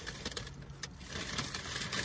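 Rustling and crinkling of a paper takeout bag and food packaging being rummaged through, with a few sharp crinkles toward the end.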